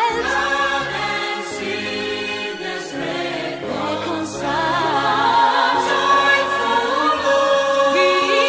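A choir singing a Christmas song with vibrato over held instrumental chords, the bass notes changing every second or so.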